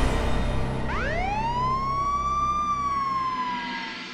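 Dramatic background-score sting: under the music, a single synthesized tone swoops up steeply in pitch about a second in, holds, then sinks slowly and fades out as the scene changes.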